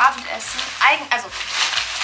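Cloth shopping bag and the grocery packaging inside it rustling and crinkling as they are handled, in a string of short crackles.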